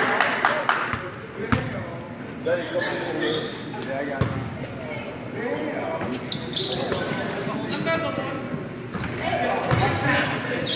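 Basketball bouncing on a hardwood gym floor during play: a quick run of bounces in the first second, then single bounces further on, with players' and spectators' voices throughout.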